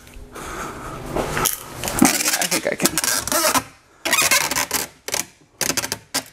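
Rustling and clicking handling noise that runs for about three and a half seconds, followed by short bursts of clatter about four and five seconds in and near the end.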